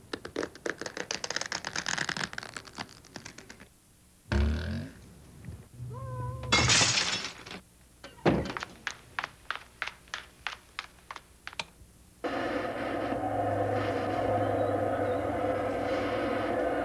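Cartoon sound effects: a fast run of clattering clicks, a thump, a short cat's meow followed by a hissing burst, a second thump and evenly spaced ticks at about three or four a second. About twelve seconds in, a steady drone with a low hum takes over.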